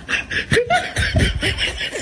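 A person laughing in a quick string of short bursts.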